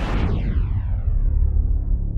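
Synthesized broadcast transition effect: a whoosh that sweeps down in pitch over about a second into a deep, sustained bass rumble.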